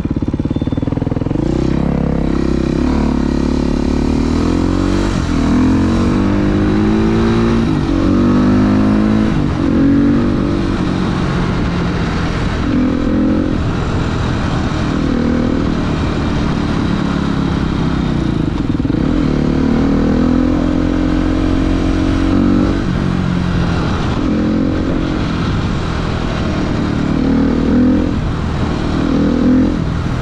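Dirt bike engine running while riding, its pitch climbing and dropping again and again as it accelerates, changes gear and eases off.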